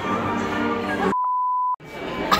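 Background music with crowd noise, cut off about a second in by a single steady beep tone of one pitch lasting about two-thirds of a second, with all other sound muted under it, like an edited-in bleep.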